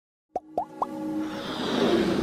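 Opening of an animated logo sting made of sound effects: three quick rising pops, followed by a whooshing riser that swells steadily louder.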